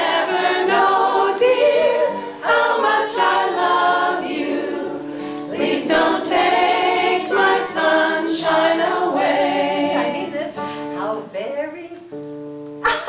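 A woman singing a song to her own acoustic guitar accompaniment, the voice wavering with vibrato over sustained guitar chords; the singing fades out near the end.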